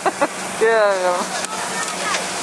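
Mostly speech: a girl says a drawn-out "kijk" about half a second in, over a steady background hiss.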